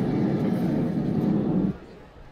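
The drill's backing track ends on a loud, low, noisy sound effect that cuts off suddenly near the end, as the performance finishes.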